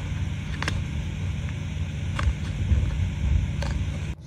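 A steady low background rumble, with a few faint short clicks as a cardboard baseball card is bent and creased in half by hand.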